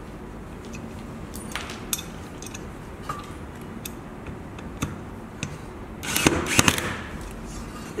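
Light metallic clicks and taps of a screw and bit being set against an aluminium profile, then, about six seconds in, a cordless drill briefly driving the screw into the aluminium, lasting about a second.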